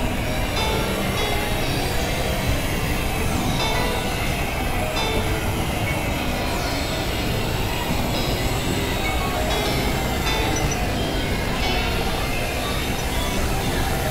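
Experimental electronic noise music: a steady, dense synthesizer drone and noise wash with a low rumble, faint falling glides and short tones recurring at even intervals.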